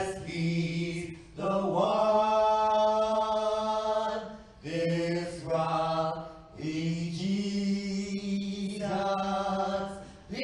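Church special music: slow singing in long held notes, in phrases of one to three seconds with short breaths between them.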